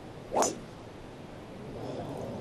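A golf driver striking the ball on a full tee shot: one sharp crack a little under half a second in, followed by a faint background hush.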